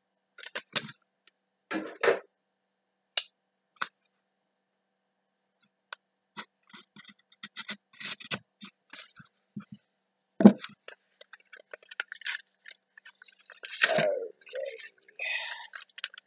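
Foil Yu-Gi-Oh booster-pack wrapper crinkling as it is opened and laid down near the start, then trading cards being handled: many light clicks and slides, with one sharper knock about ten seconds in.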